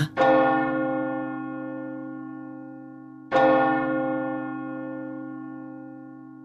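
A bell struck twice, about three seconds apart, each stroke ringing on and slowly dying away.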